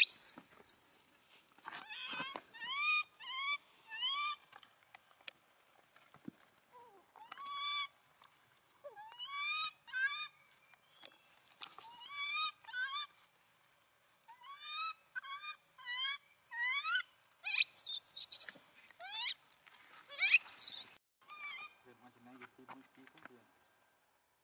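Infant macaque calling over and over: short rising squeals in runs of three or four, broken by a few higher shrill screams.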